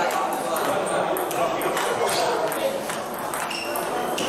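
Table tennis ball clicking off rackets and the table during rallies, a run of sharp hits a fraction of a second apart, over a steady murmur of voices echoing in the hall.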